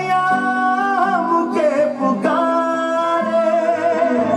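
Bhojpuri patriotic song playing: long held sung notes over an instrumental backing with steady bass notes.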